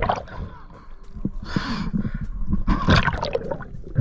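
Water sloshing and bubbling against an underwater action camera, with a steady low rumble and two short rushing bursts of bubbles, about a second and a half and three seconds in.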